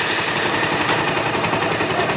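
Electric starter motor of a Bajaj Pulsar 150 cranking its single-cylinder engine, powered directly by a screwdriver bridging the starter relay's two main terminals: a steady, rapid mechanical chatter. The motor turning over shows the starter motor itself is working.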